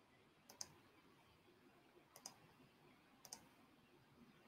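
Three faint, sharp double clicks about a second apart over near silence.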